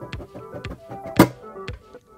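Lid of a metal trading-card tin being pulled off: a few small clicks and one sharp thunk about a second in as it comes free, over background music.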